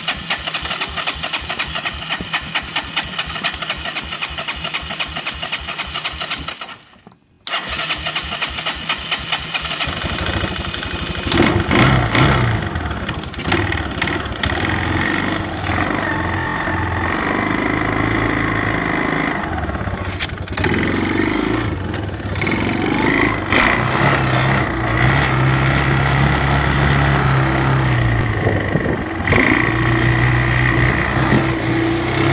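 An off-road vehicle's engine being cranked by its electric starter: a fast, even chugging with a thin high whine. The cranking stops briefly about seven seconds in, starts again, and the engine catches about ten seconds in. It then keeps running, its pitch rising and falling with the throttle.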